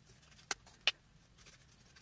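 Two quick snips of scissors cutting a paper circle, a little under half a second apart.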